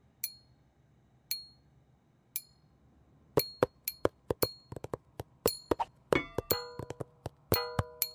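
Drumsticks tapping on an improvised drum kit of a saucepan, a pad of paper and a hanging pen. There are three single taps about a second apart, then a quicker rhythm of taps. Ringing pitched notes join the tapping near the end.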